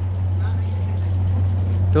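A steady low hum runs unbroken under the scene, with a man's voice coming in at the very end.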